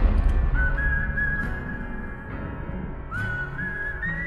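Trailer music: a lone whistled melody in two phrases, each scooping up into a held high note, over a low sustained music bed. The tail of a heavy boom is fading at the start.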